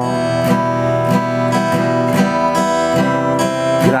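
Steel-string acoustic guitar strummed in steady chords, about two strokes a second.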